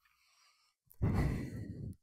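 A woman's sigh, one long breath out into a close microphone, lasting just under a second, about a second in.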